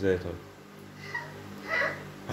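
A toddler's brief high-pitched vocal sound near the end, made in answer to being asked how a donkey goes: a small child's attempt at a donkey's bray.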